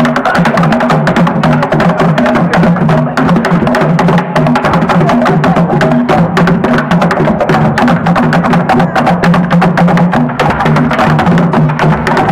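Loud music driven by fast, busy percussion: drums and sharp wooden clicks that go on without a break.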